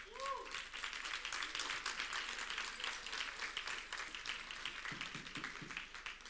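Congregation applauding: a steady, fairly faint patter of many hands clapping, with one short call from someone near the start, thinning out near the end.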